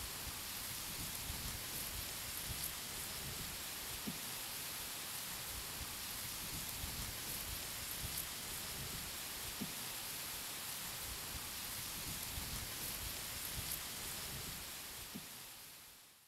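Steady rain-like hiss with faint scattered ticks and crackles, fading away over the last second or so.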